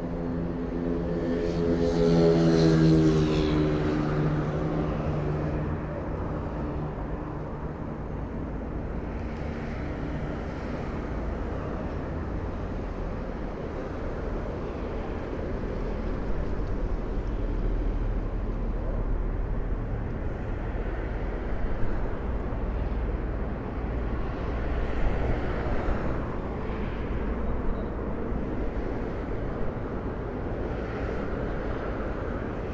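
GMC Hummer EV electric pickup moving slowly. It gives off a pitched electric hum that swells to its loudest about two to three seconds in and fades by about four seconds. After that comes a steady low rumble with no engine note.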